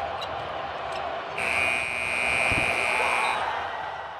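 Basketball arena's game-ending buzzer sounding one steady tone for about two seconds, the buzzer going as the winning shot is taken. It sounds over a din of court noise and voices, with a low thump about halfway through.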